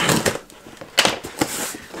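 Cardboard box being cut and pulled open, giving several sharp crackles and scrapes of cardboard.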